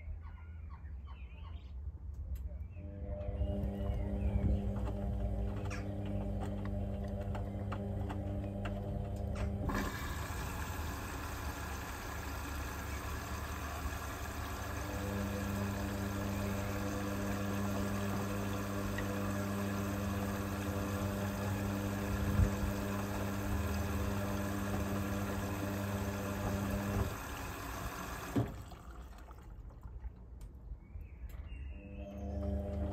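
Indesit IWB washing machine turning a load of laundry in its drum, its motor giving a steady hum. About ten seconds in, water starts hissing into the machine as it fills, and cuts off near the end.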